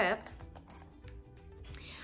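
Faint small clicks and taps of enamel pins on cardboard backer cards being handled and shuffled.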